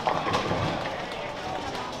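Bowling-center din: indistinct voices over a steady background rumble, with a couple of sharp knocks near the start.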